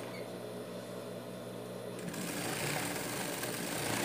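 Industrial lockstitch sewing machine running steadily, stitching through layers of fabric: a motor hum under a fast, even needle chatter that grows busier from about two seconds in.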